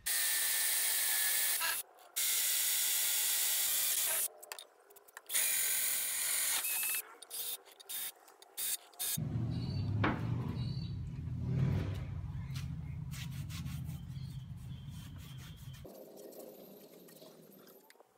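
Ryobi 18 V cordless drill boring a bolt hole into a jointer's metal base: three long runs with short pauses, then a few shorter bursts. A quieter, lower-pitched sound follows for several seconds and stops suddenly near the end.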